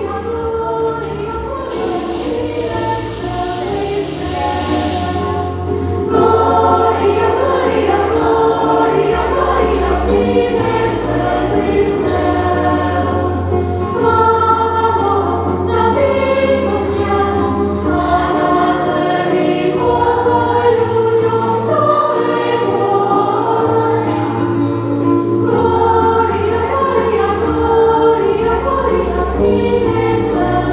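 A choir of young girls sings a song together over instrumental accompaniment that has a steady bass line. A hiss sounds for a few seconds near the start.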